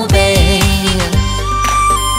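A Chinese pop song. A singer holds and lets fall the last word of a line over a steady drum beat. About a second in, the song goes into an instrumental break with a sustained low bass and a long held high note.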